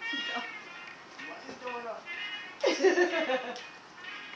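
People's excited voices calling out in greeting, several drawn-out exclamations sliding up and down in pitch, the loudest near the end, over soft background music.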